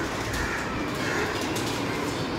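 Rubik's cubes clicking softly as they are turned, over a steady background, with a bird cooing.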